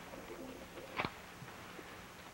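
Quiet old film soundtrack: a steady faint hiss with a single sharp click about a second in.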